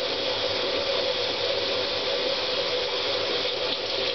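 Tap water running steadily into a bathroom sink: an even rushing with a faint steady hum under it.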